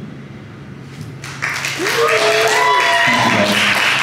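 Audience applauding and cheering, breaking out about a second and a half in after a short lull, with a voice whooping in a long rising-and-falling call.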